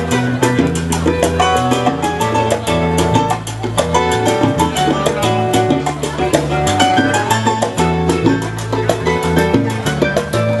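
Salsa music played from vinyl records: a steady, fast percussion beat over a bass line stepping between notes, with several pitched instruments on top.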